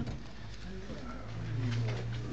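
A man's low, drawn-out hum, growing stronger through the second half, as he gets up out of a chair.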